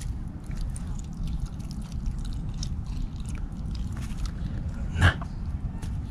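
A young red fox biting and chewing raw chicken hearts taken off a feeding stick: a run of quick, irregular clicks of teeth and jaws over a low steady rumble.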